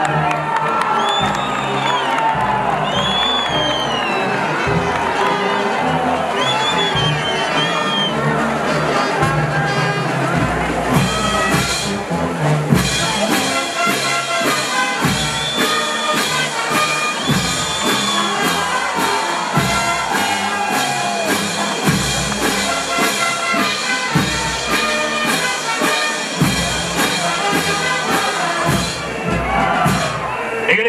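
Brass band of trumpets, saxophones, clarinets, tubas, bass drum, snare and cymbals playing, with a crowd cheering over it. From about ten seconds in, an even drum-and-cymbal beat drives the music.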